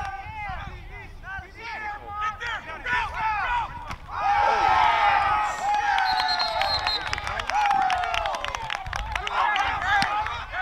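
Several excited voices shouting and cheering, getting louder and denser about four seconds in.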